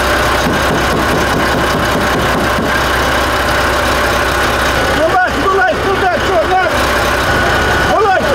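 FAW heavy truck's diesel engine idling steadily close by, a constant low hum under engine noise. A man's voice breaks in about five seconds in.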